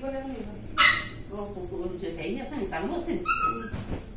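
A dog whining and yelping in wavering, rising-and-falling cries, with one louder, sharper cry about a second in.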